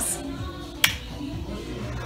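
A single sharp finger snap just under a second in, over quiet background music.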